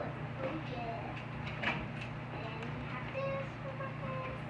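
A young child's faint voice, in short high-pitched murmurs toward the end, over a steady low hum, with a few light taps and clicks.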